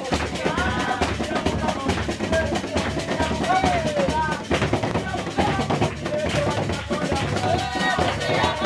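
Live gospel worship music: women's voices singing together over a dense, steady drum beat.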